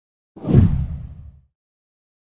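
A whoosh transition sound effect: one deep rushing swell that starts about a third of a second in, peaks almost at once and fades away by about a second and a half.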